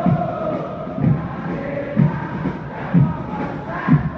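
A large crowd of football supporters singing a chant in unison, with a drum struck in a steady beat about once a second.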